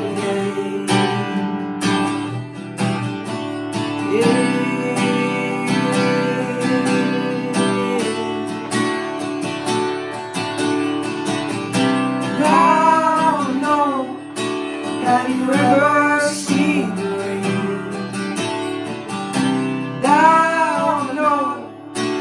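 Acoustic guitar strummed in a steady rhythm with sung vocal phrases over it: one long held note a few seconds in, then several shorter phrases in the second half.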